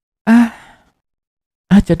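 A short voiced sigh that trails off into breath, followed near the end by the start of speech.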